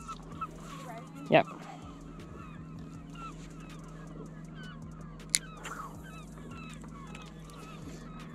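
Many birds calling from a flock, a continual scatter of short, faint, overlapping calls, over a steady low hum, with a single sharp click about five seconds in.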